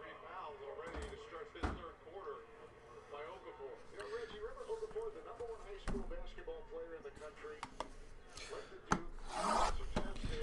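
A wrapped cardboard trading-card box being handled: a few soft knocks as it is picked up and set down, then a rubbing of a palm across its wrapped top near the end. A faint voice runs underneath.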